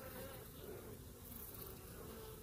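Honeybees buzzing in a faint, steady hum around a frame lifted from an open hive.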